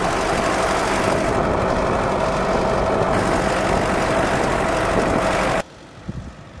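Ford farm tractor's engine running steadily under load, turning the PTO-driven propeller, heard close up from aboard the floating tractor as a loud, even drone with a steady hum. It cuts off suddenly near the end, leaving a much quieter background.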